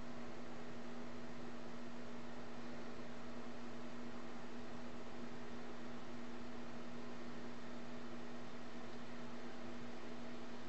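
Steady hiss and a constant low hum, with no distinct sounds: room tone.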